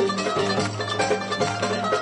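Turkish Roman belly-dance music played by a small ensemble: plucked strings (oud and kanun) over a steady, driving beat.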